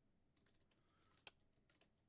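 Very faint computer keyboard typing: a handful of scattered key clicks, the clearest just past the middle, entering an IP address into a web browser's address bar.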